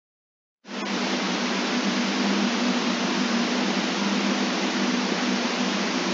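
Steady, loud hiss like static, starting abruptly just under a second in, with a low hum underneath.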